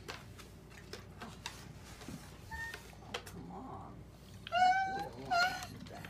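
Two short, high, meow-like cries, about four and a half and five and a half seconds in, over faint scattered clicks.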